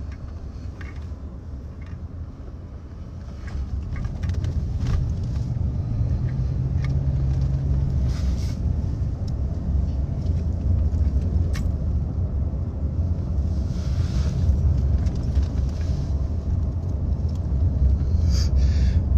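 Low rumble of a moving car heard from inside the cabin. It grows louder about three to four seconds in, then holds steady, with a few faint clicks.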